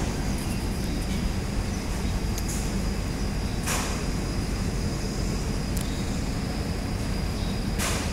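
Steady low background rumble of outdoor ambience, with a faint steady high whine and a brief faint hiss about halfway through.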